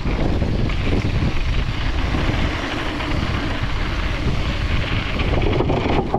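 Wind rushing across a handlebar-mounted GoPro's microphone as a Rose Soul Fire mountain bike descends a dirt flow trail at speed, mixed with the steady low rumble of the tyres and the bike rattling over the ground.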